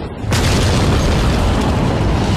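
A large explosion goes off about a third of a second in: a sudden loud boom that runs on as a heavy, rumbling roar.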